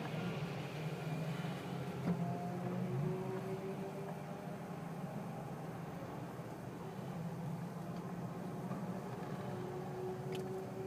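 Mazda RX-8's twin-rotor rotary engine idling steadily, heard from inside the cabin, with one light click about two seconds in.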